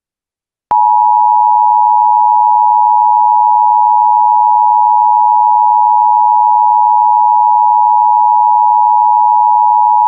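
Emergency Alert System attention signal: a loud, steady two-tone alarm, two close pitches sounding together, beginning just under a second in after a brief silence and holding unbroken.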